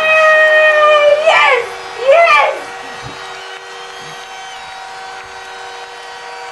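A woman's long, high-pitched scream, held at one pitch and ending in an upward swoop about a second and a half in, then a shorter rising-and-falling cry; after that a steady hum remains.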